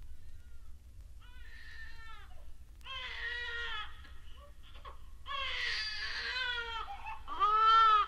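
An infant crying in a series of wailing cries that rise and fall in pitch, each louder than the last, over a low steady hum.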